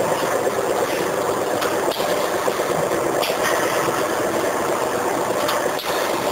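Semi-automatic chips pouch packing machine running: a steady mechanical hum with a few sharp clicks spaced a second or more apart.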